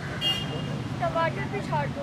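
Steady street-traffic rumble under voices talking, with a brief high-pitched tone about a quarter second in.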